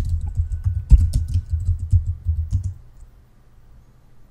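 Computer keyboard being typed on: a quick run of keystrokes that stops about three seconds in.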